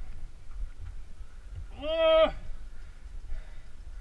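A single short, loud call from a voice, about half a second long, about two seconds in: the pitch rises into it, holds, then drops at the end. A steady low rumble runs underneath.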